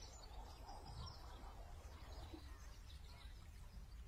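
Quiet outdoor ambience: a low steady rumble with faint birdsong.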